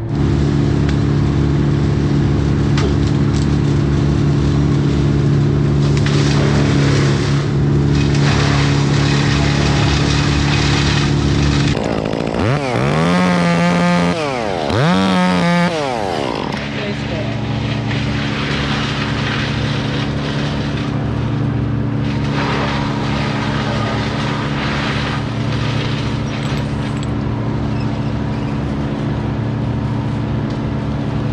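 Top-handle chainsaw running steadily, revved up and down twice about halfway through, then running steadily again.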